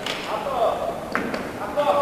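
Indistinct chatter of people in a large sports hall, with a short sharp sound about a second in.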